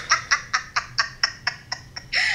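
A person laughing in a quick run of short, evenly spaced 'ha' pulses, about five a second, that grow fainter and die away near the end.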